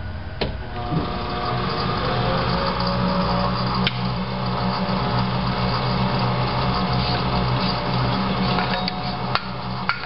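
E-Pak retorquer cap tightener running: its spindle gear motors and conveyor give a steady mechanical hum, with one tone rising about two seconds in. Sharp clicks and knocks come about a second in, about four seconds in and a few times near the end.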